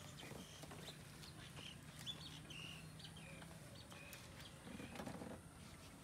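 Quiet outdoor ambience with scattered short bird chirps and a few faint clicks.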